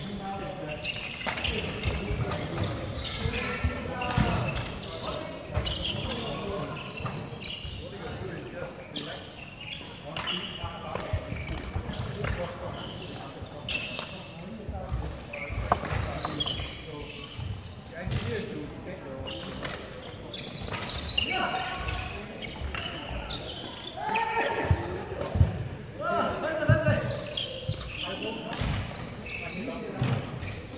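Indistinct voices talking in a large indoor sports hall, with scattered thumps and knocks throughout.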